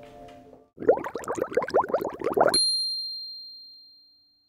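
End-card sound effect: a quick run of about eight rising bloops, then a single bright ding that rings and fades away. The drama's soft background music fades out just before it.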